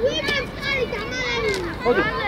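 Children's voices calling out and chattering, high-pitched and overlapping.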